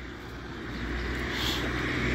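A motor vehicle approaching, its engine and tyre noise growing steadily louder.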